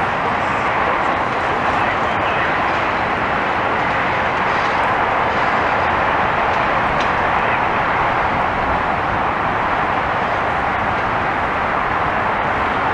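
Steady, even vehicle noise with no distinct engine note or rhythm, holding level throughout.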